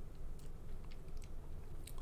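A few faint clicks over a low steady hum.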